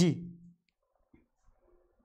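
A man's voice ends a short word at the start, then near silence broken by a few faint, light clicks.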